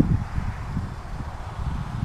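Wind buffeting the camera microphone: an uneven low rumble that rises and falls.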